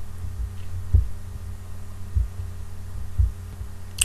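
Steady low hum, with three dull low thumps about a second apart.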